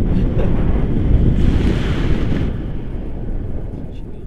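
Wind from a paraglider's flight buffeting a camera microphone: a loud, low wind rumble. A hissier gust comes in the middle and eases off over the last second and a half.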